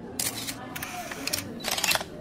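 Camera shutters clicking in several quick bursts over a low steady background hiss: the sound of press photographers at a news conference.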